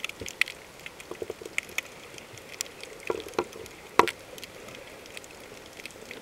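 Underwater crackling: a faint steady hiss dotted with irregular sharp clicks and pops, one much louder click about four seconds in, picked up by a submerged camera over a rocky, shell-covered reef.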